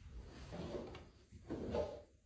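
A bathroom vanity drawer sliding open, heard as two short scrapes, the second one louder near the end.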